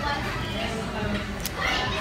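Indistinct voices and background chatter in a busy fast-food restaurant, with a clearer high-pitched voice rising near the end.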